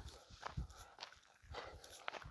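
Faint footsteps on a dirt-and-gravel path, a few soft irregular steps.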